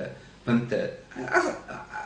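Only speech: a man talking in short phrases with brief pauses between them.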